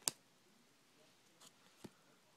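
Cardboard trading cards being flipped through by hand: a sharp card snap right at the start, a soft slide of card on card, and another snap near the end.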